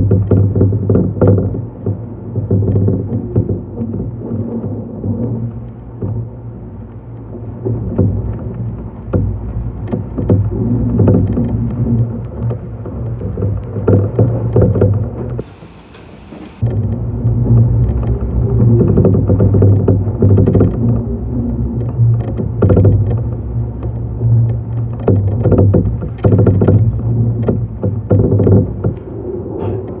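Meitetsu 6500 series electric train running at speed, heard from inside the driver's cab: a steady low rumble and hum with irregular clicks and knocks from the wheels on the rails. The noise drops away for about a second halfway through, then returns.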